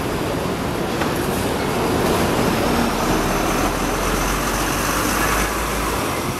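City street traffic noise with a large vehicle passing close by. Its low rumble builds from about three seconds in and drops away at the very end.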